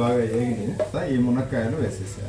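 A person talking over onions frying in oil in a pot while a wooden spatula stirs them. The voice is the loudest sound.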